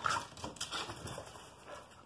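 A pit bull-type dog jumping at a cinderblock wall and dropping back to the ground: scuffing of paws and claws on block and dirt, with short noisy puffs of breath. The loudest scuff comes right at the start, with smaller ones after.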